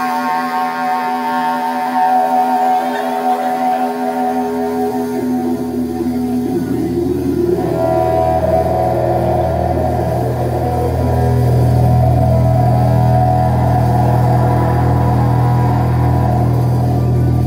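Live rock band playing: long held, droning guitar tones, with a deep bass coming in about four seconds in and the music swelling slightly near the middle.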